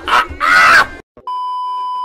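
A man's loud yell lasting under a second, then a short break, then a steady high test-pattern beep tone of the kind played over TV colour bars.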